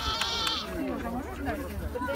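A short bleat, lasting under a second, near the start, over people talking in the background.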